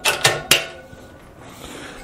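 Metal latch hardware clicking against a pair of nested aluminum car hauler ramps as the latches are fastened: two sharp clicks, the second about half a second in.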